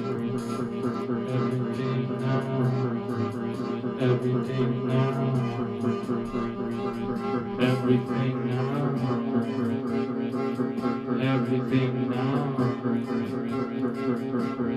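Instrumental music from an electronic keyboard: sustained bass notes and chords over a steady ticking beat.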